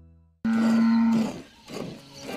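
Cattle mooing: one loud moo starts suddenly about half a second in and lasts under a second, followed by a shorter, quieter sound near the end.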